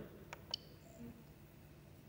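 Two quick clicks about a third and half a second in, the second louder: the rotary control knob on an Original Prusa MK3S printer's LCD panel being turned and pressed to select Auto Load Filament. Faint room tone otherwise.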